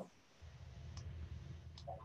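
Faint low rumble of background noise over a video-call connection, with two small clicks a little under a second apart.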